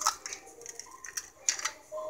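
Eggshells being cracked and pulled apart by hand: scattered light clicks and crackles, with a few sharper clicks about one and a half seconds in.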